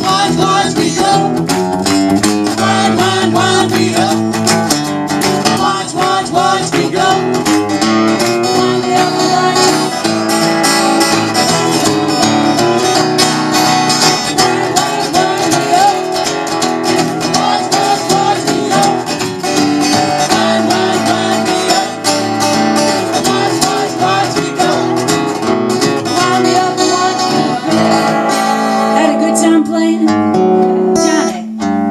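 Live band playing strummed guitars while several voices sing a song verse.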